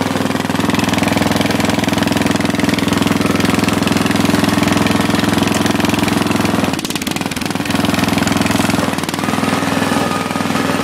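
Riding lawn tractor's small engine running steadily with a rapid, even chug, dipping briefly about seven seconds in.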